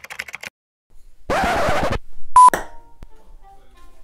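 Edited-in sound effects over a title card: a half-second burst of hiss, then a short, loud single-pitch beep about two and a half seconds in.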